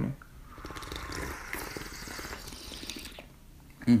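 Tea being slurped from a small tasting cup: one long noisy sip that fades out about three seconds in.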